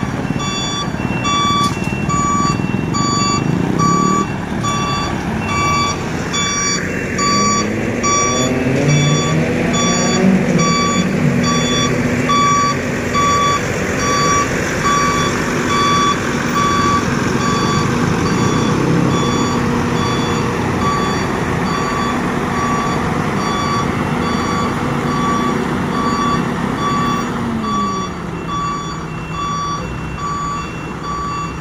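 Heavy truck's reversing alarm beeping in a steady rapid train, over the diesel engine of a prime mover hauling a low-bed trailer. The engine note rises and falls as the rig manoeuvres, and drops near the end.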